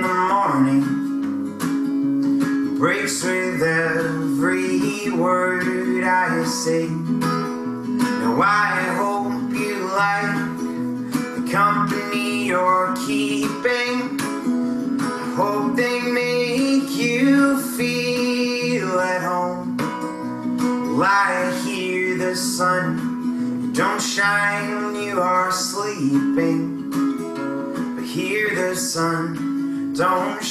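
A man singing to his own strummed acoustic guitar, a steady solo song with held chords under the voice.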